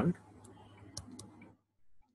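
A few faint, sharp clicks of a stylus tapping a tablet screen while handwriting, just after a spoken word trails off.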